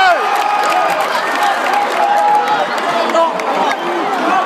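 Huge crowd of spectators shouting and cheering, many voices overlapping in a continuous din; a long held shout slides down and breaks off right at the start.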